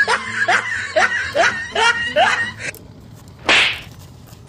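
Comic sound effect over the chase: a run of short rising squeaks, about two a second, that stops just before three seconds in. It is followed by a brief whoosh about three and a half seconds in.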